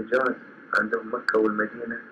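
Speech on a muffled, low-fidelity recording, in short phrases over a steady background hiss.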